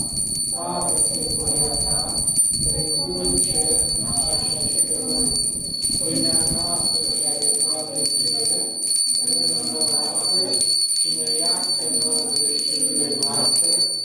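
Voices reciting the Lord's Prayer in Romanian in phrases, with a steady high-pitched whine underneath.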